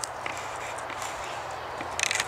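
Footsteps rustling through tall weeds and dry leaf litter, as a steady brushing noise with a few faint ticks and a short run of clicks near the end.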